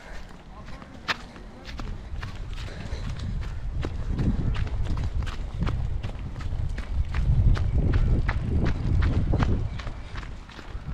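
Running footsteps on dry, gravelly dirt close to the microphone, a sharp crunch about two to three times a second, over a low rumble that swells twice.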